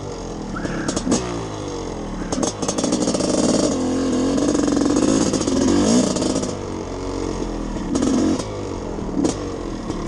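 Two-stroke dirt bike engine revving up and down through gear changes while riding, held at its highest and loudest from about three to six and a half seconds in. Rushing air on the microphone and a few sharp clicks run under it.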